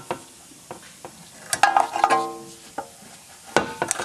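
Snap ring pliers working the steel snap ring off a lower ball joint in a steering knuckle: scattered metal clicks and scraping, with a brief ringing metallic squeal about a second and a half in, and a couple of sharper clicks near the end.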